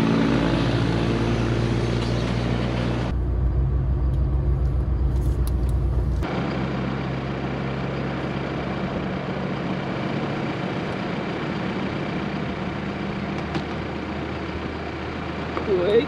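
Steady road and wind noise of a four-wheel drive on the move, heard from outside at the open window. The sound changes abruptly twice, about three and six seconds in.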